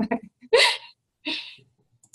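A woman laughing: two short, breathy bursts of laughter, about half a second and a second and a quarter in.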